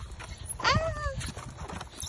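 A young child's short wordless cry, high and falling in pitch, about half a second long, over the low rumble of a push tricycle's plastic wheels rolling on a concrete sidewalk.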